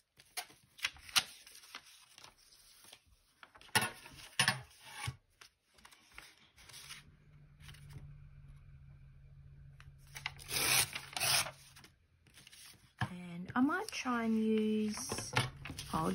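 Sheets of paper and cardstock rustling and sliding against each other as they are shuffled and lined up, with a steel ruler laid down and slid over them: a run of light taps and scrapes, and a longer scraping rustle about ten seconds in. A voice comes in near the end.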